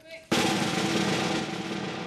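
A snare drum roll starts suddenly about a third of a second in and runs on steadily, a suspense drum-roll sound effect for the jelly bean game.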